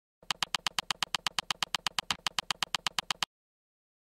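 Rapid electronic ticking, about eight even ticks a second, from an intro title-animation sound effect. It stops abruptly after about three seconds, and a brief low tone sounds about two seconds in.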